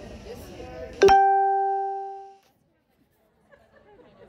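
Low voices for about a second, then a single loud plucked-string note, like a ukulele, that rings and fades over about a second and a half, followed by dead silence.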